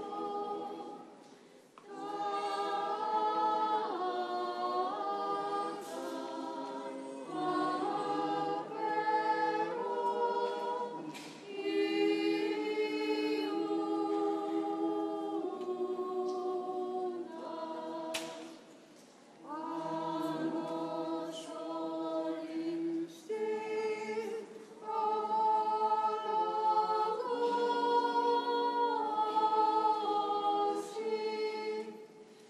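Church choir singing a cappella in several-part harmony, sustained chords in long phrases with short breaks between them about a second in and around eighteen seconds in. It is the hymn sung while Holy Communion is given in the Greek Orthodox Divine Liturgy.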